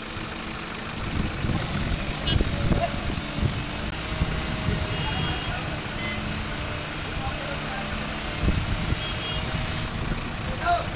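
Diesel engine of a Sany truck-mounted crane running steadily while it lifts a load. A short high double beep of a warning signal sounds twice, about halfway through and again near the end.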